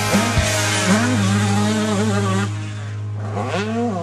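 Background rock music soundtrack with a steady bass note and a wavering melodic line.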